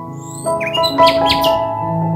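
Slow ambient background music with sustained keyboard notes, and a small bird chirping over it: a few thin, high whistled notes, then a quick run of sharp, louder chirps about a second in.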